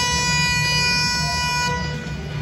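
Basketball arena's game horn, one long steady buzz that cuts off near the end, marking the end of a timeout. A low rumble of the arena runs underneath.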